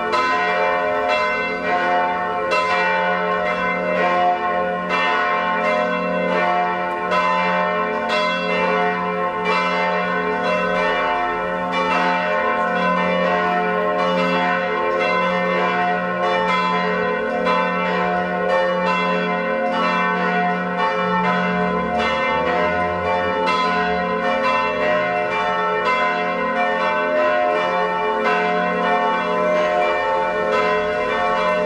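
Three swinging church bells, tuned F♯, A and C with curved metal yokes, ringing together in a full peal with a continuous, overlapping stream of strikes. The bells are calling the faithful to a service.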